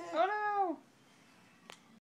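A baby's single high-pitched vocal squeal, rising and then falling in pitch over about three-quarters of a second. A short click follows near the end.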